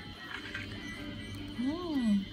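Mostly quiet, then about one and a half seconds in a voice gives one drawn-out, sing-song 'ooh' that rises and falls in pitch.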